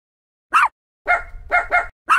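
A dog barking: four short barks, the second a little longer than the others.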